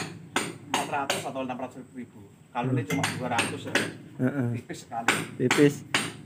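Men talking, with sharp metallic knocks and clinks among the speech.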